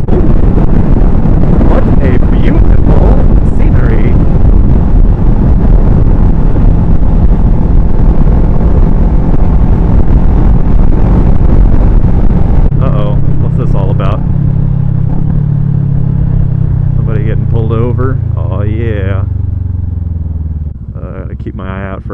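Motorcycle at highway speed, its engine buried under heavy wind rush on the helmet microphone. About halfway in the wind eases, and the engine note comes through and falls steadily as the bike slows, then drops quieter near the end.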